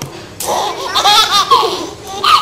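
A toddler laughing: a run of short, high, bouncing laugh bursts starting about half a second in and lasting about a second and a half.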